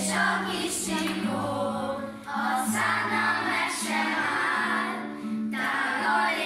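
A group of schoolchildren singing a song together, with short breaks between phrases just after two seconds and about five seconds in.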